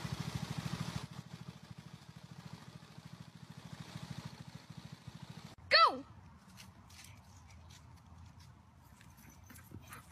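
Small two-stroke engine of a string trimmer running with a fast, even buzz, loudest in the first second and then fainter. About six seconds in comes one short, loud cry that falls steeply in pitch.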